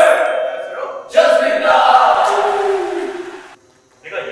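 A group of young men shouting their group greeting "Ready, burn!" in unison. This is followed by loud group shouting and clapping that cuts off suddenly about three and a half seconds in.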